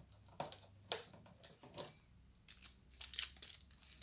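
Plastic packaging and foil Pokémon booster packs being handled, crinkling in short, irregular crackles.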